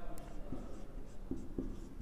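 Marker pen writing on a whiteboard: a few faint, short strokes as a word is written.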